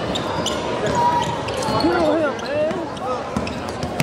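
Live basketball game sound in a gym: a ball bouncing on the hardwood floor, sneakers squeaking in short bursts of rising and falling chirps, and voices of players and the crowd.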